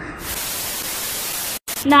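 A steady static hiss runs for about a second and a half, then cuts off abruptly.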